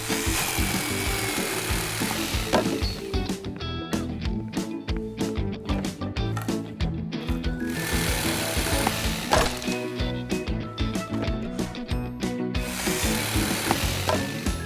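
Background music over an electric jigsaw cutting wood, heard in three spells of sawing: at the start, about eight seconds in, and near the end.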